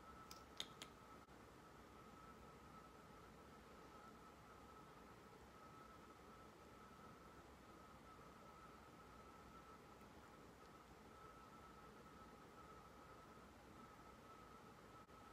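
Near silence: room tone with a faint steady high whine, and a few small clicks in the first second.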